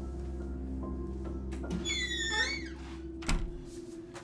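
Soft background music with sustained tones. About two seconds in, a bedroom door's hinge squeaks as the door swings, and a short thud follows a little after three seconds.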